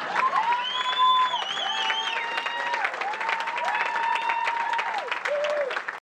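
Audience applauding and cheering after the final punchline, with steady clapping and several long, drawn-out whoops held over it.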